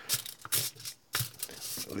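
Sheet of heavy-duty aluminium kitchen foil crinkling and tearing as a hobby knife cuts through it and the cut piece is pulled aside, in a few short crackles.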